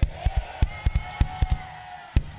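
A drum kit played in a quick, uneven run of hits with heavy low thuds, over a held keyboard chord that fades out near the end: a short musical flourish after the closing amen.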